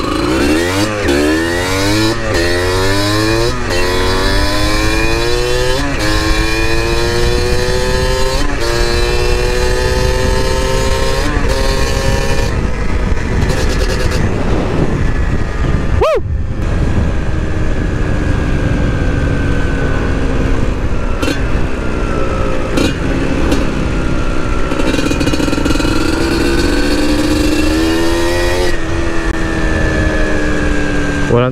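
Kawasaki KMX125's single-cylinder two-stroke engine under way, its pitch climbing quickly and dropping back at each upshift through the first dozen seconds. After a brief sharp dip about halfway, it holds a steadier cruising note that rises and falls gently.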